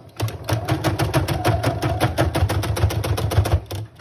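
Brother computerized sewing machine stitching a fabric tie down along the edge of an apron, with a rapid, even run of needle strokes over a low motor hum. It starts just after the beginning and stops shortly before the end.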